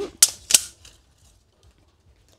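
Two sharp clicks about a third of a second apart from a steel tape measure being handled against the top of a wooden stool.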